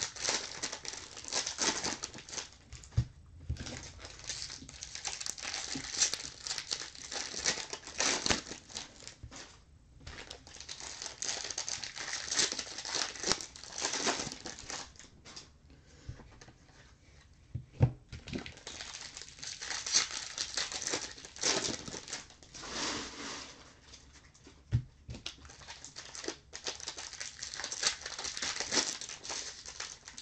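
Foil wrappers of Bowman baseball card packs crinkling and tearing as the packs are ripped open and the cards handled, in stretches of rustling with a few sharp taps, one about three seconds in, one near 18 seconds and one near 25 seconds.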